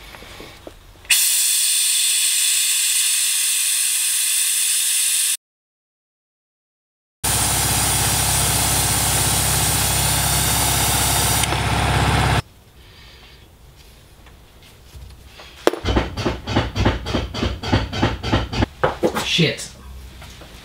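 Trigger-operated, air-powered vacuum brake bleeder hissing steadily as it sucks brake fluid out through an open caliper bleed nipple. It runs in two long stretches of about four and five seconds, split by a sudden cut to silence. Near the end comes a fast run of evenly spaced clicks.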